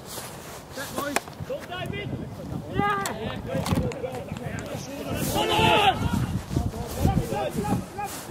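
Football players shouting and calling to each other across an open pitch, with one loud shout a little past the middle. A few sharp thuds of the ball being kicked cut through the voices.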